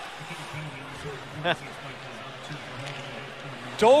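Ice hockey arena ambience: a steady crowd murmur with a faint low hum. A single sharp click comes about a second and a half in, and a commentator's voice starts near the end.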